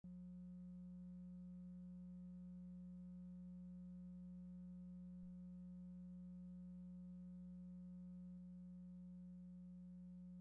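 Faint, steady low electrical hum: one unchanging droning tone with weaker higher overtones and nothing else.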